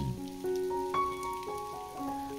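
Steady rain falling on a grassy lawn, under soft background music of long held notes, with new notes coming in about half a second and a second in.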